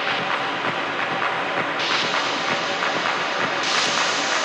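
Dark techno in a breakdown: a dense hissing noise texture with the bass and kick removed and regular ticking percussion, its filter opening brighter in two steps, about two seconds in and near the end.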